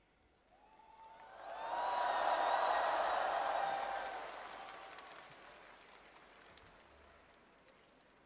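Large arena audience applauding and cheering, swelling to a peak about two seconds in, then dying away by about six seconds.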